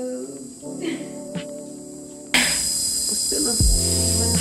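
Soft background music with held notes. About two seconds in, a sudden cut brings in a louder, steady, high-pitched hiss like insects chirring, with the music still underneath.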